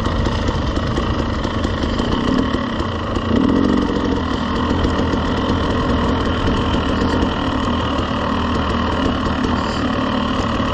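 Dirt bike engine running at low revs while rolling slowly down a rocky trail, with a slight rise in throttle a little after three seconds in.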